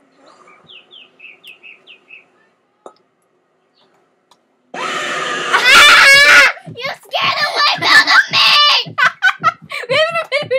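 A screamer video's sudden, loud, harsh scream bursts in about five seconds in, and a young boy screams in fright, followed by more loud shrieking and laughter.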